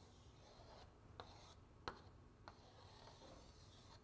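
Faint chalk drawing on a blackboard: a few light taps and strokes of the chalk, the clearest just under two seconds in.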